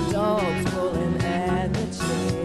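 Live rock band playing: a woman's lead vocal sings a bending melody over electric guitars, a drum kit and keyboard.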